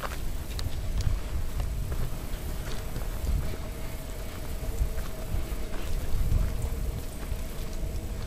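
Footsteps on a forest trail, with the handheld camera's handling rumble and scattered small clicks and knocks. A faint steady hum runs underneath.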